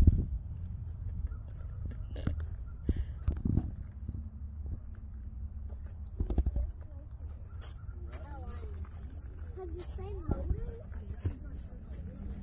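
Background chatter of people talking at a distance, over a steady low rumble of wind buffeting the microphone, with a few sharp thumps along the way.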